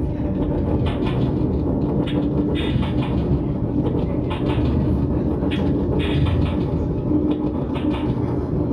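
Live electronic noise music from effects pedals and a laptop: a dense, loud low rumble with a steady drone held underneath and irregular bright crackles breaking in above it.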